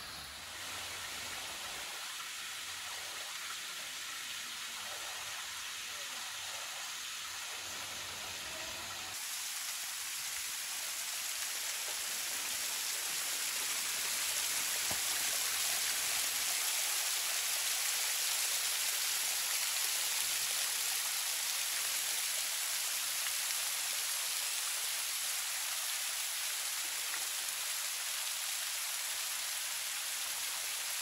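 Thin waterfall spilling and splashing down a layered sandstone rock face: a steady hiss of falling water. It gets louder and brighter about nine seconds in.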